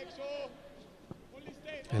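A faint voice in the first half second, then a single sharp thud of a football being kicked about a second in, with little crowd noise around it.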